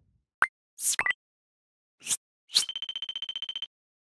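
Motion-graphics sound effects for an animated end card: a short pop, quick swishes, then a rapid run of high beeps, about twenty a second, lasting about a second and stopping suddenly.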